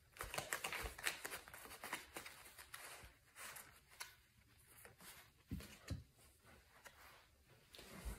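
Faint rustling and clicking of a deck of oracle cards being shuffled by hand: a quick flurry of soft card clicks for the first few seconds, then a few scattered taps as a card is drawn.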